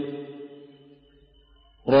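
A man's chanted Quran recitation in Arabic: a held note dies away with a reverberant tail over the first second. After a short, almost silent pause, the chanting starts again sharply near the end.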